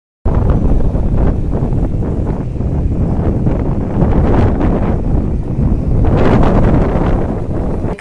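Wind buffeting an outdoor microphone: a loud, steady rumbling noise with no speech, starting just after a brief dropout at the very beginning.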